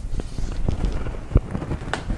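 Clothing rustle and body-movement noise as a person comes down out of an upside-down hang on a doorway pull-up bar, with a heavy thump a bit past the middle as the feet land on the floor and a sharp click just before the end.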